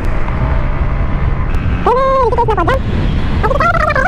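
Wind and road rumble from a moving scooter, steady and low. A short pitched voice-like call rises and falls about two seconds in, and another comes near the end.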